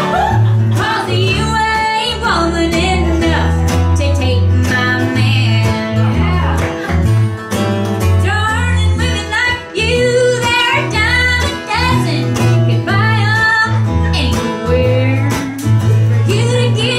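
Live acoustic country band playing: strummed acoustic guitar and mandolin over a steady bass line, with a young woman singing lead, her voice carrying most strongly from about halfway through.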